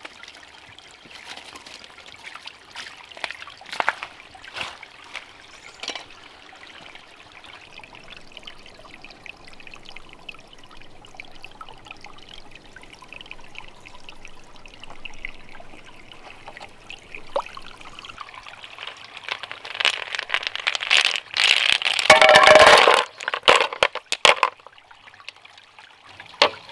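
A small stream trickling steadily, with scattered knocks and scrapes in the first few seconds. About twenty seconds in, water pours and splashes loudly for a few seconds, then stops abruptly.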